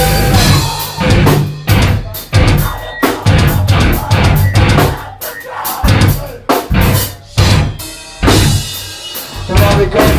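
Metal band playing live, with electric guitar, bass guitar and drum kit, in a stop-start riff of loud hits broken by short gaps.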